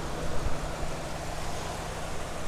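A 2022 GMC Sierra 1500 Denali Ultimate's 6.2-liter V8 idling with its cooling fans running, heard from the open engine bay: a low, steady hum under an even rush of fan air. The idle is so quiet.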